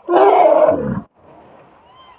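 Asian elephant roaring once, a loud call of about a second that slides down in pitch as it ends.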